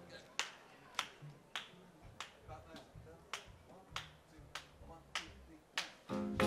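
Finger snaps keeping a steady tempo: about ten crisp snaps, evenly spaced a little over half a second apart, setting the swing beat before the big band comes in.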